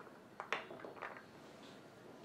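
A few light taps of carrot dice and fingers on a wooden cutting board as the cubes are gathered by hand, the sharpest two about half a second in and a few softer ones around a second.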